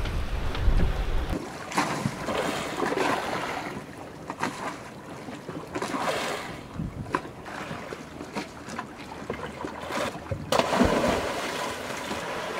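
Water rushing and splashing along the hulls of a catamaran under sail, with wind on the microphone. The wind rumble is strongest for the first second or so.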